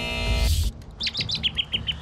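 A held music chord that ends in a whoosh about half a second in, followed by a bird-chirp sound effect: a quick run of short, high chirps, about six a second.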